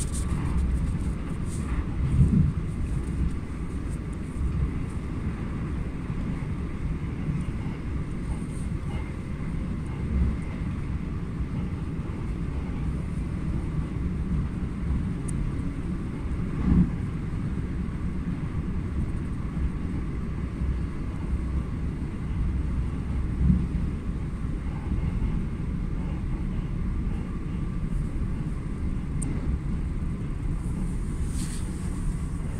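Inside a moving electric passenger train: steady low rumble of the wheels running on the rails at speed, with three brief louder low thumps, about two seconds in, around the middle and later on.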